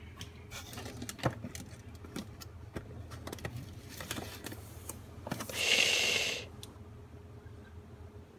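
A hand moving items about on a refrigerator shelf: a run of light knocks, clicks and rattles, with a louder burst of noise lasting about a second just past the middle.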